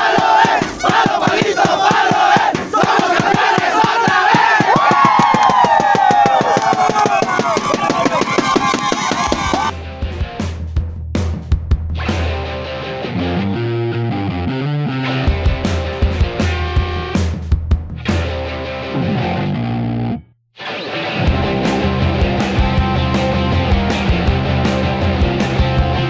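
A group of men in a huddle shouting and cheering together as a team chant. About ten seconds in, this gives way to rock music with guitar, which cuts out for a moment near the end and starts again.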